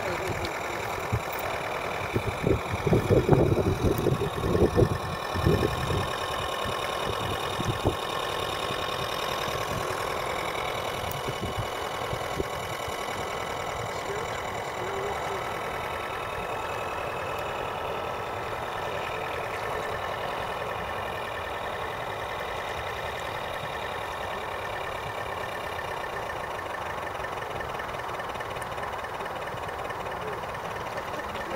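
A radio-controlled model lifeboat's motor running steadily as the boat cruises, heard as a faint continuous whine over a hiss. Gusts of wind buffet the microphone with loud low rumbles in the first several seconds.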